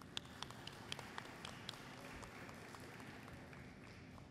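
Light applause from an audience, with a few sharper separate claps standing out in the first two seconds, then thinning and fading away.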